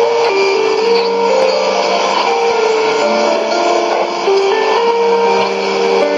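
Music from a shortwave AM broadcast received on a Sony ICF-2001D: a melody of held notes stepping up and down over a lower sustained note, with a light reception hiss behind it.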